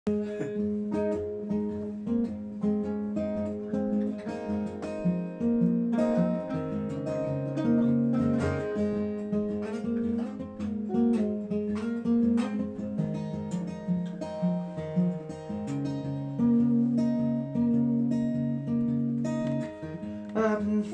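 Solo acoustic guitar intro: a repeating pattern of picked notes and chords, each note ringing on under the next.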